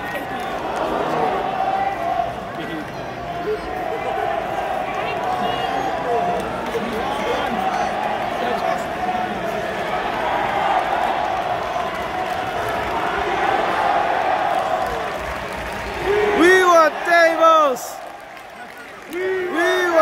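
Arena crowd at a live wrestling match: a dense, steady hubbub of many voices cheering and calling out. About sixteen seconds in, and again near the end, a spectator close to the microphone shouts loudly in short calls that fall in pitch.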